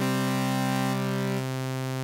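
Synthesizer chord played through a sample-and-hold sample-rate reducer clocked by a very fast pulse oscillator, so the notes still come through fairly clean. Several notes are held together at a steady level; the top note drops out about a second in and another near the end, leaving the lowest note.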